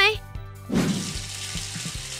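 Water spraying from a hand-held shower sprayer onto a doll's long hair, a steady hiss that starts about three-quarters of a second in.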